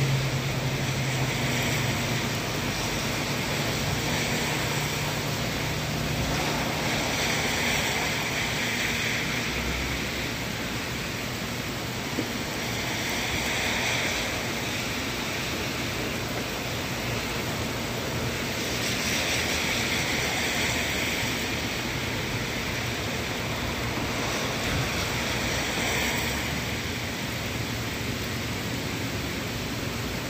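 Heavy thunderstorm rain pouring steadily, with wind in the trees. The rush rises and eases about every six seconds as gusts pass.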